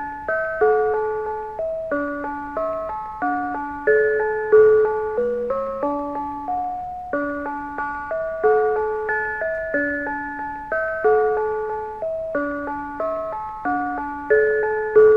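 Mr. Christmas 'Bells of Christmas' (1991) set of electric brass bells playing a Christmas tune in several-part harmony. Each note is a struck bell tone that rings and fades, with chords of two or three bells at a time.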